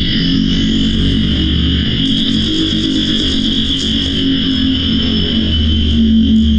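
Distorted electronic noise music, processed through an analog amplifier simulation: a steady, dense drone with a low hum, a few held mid tones and a bright hiss on top.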